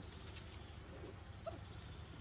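A couple of faint, brief squeaks from young macaques, over a steady high-pitched drone.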